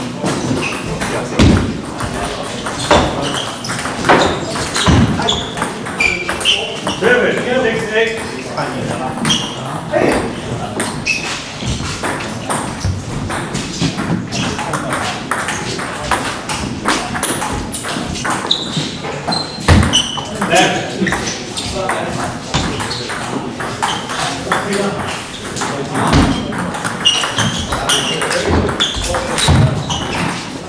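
Table tennis rallies: the ball clicking off the paddles and the table again and again, with voices in the background.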